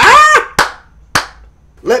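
A man's excited shout, then two sharp hand claps about half a second apart.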